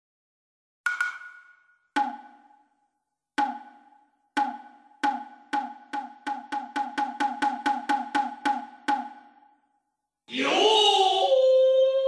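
Struck percussion in a soundtrack intro: single ringing hits about a second apart that quicken to about four a second, then stop. After a short pause comes a loud crash that settles into a held ringing tone.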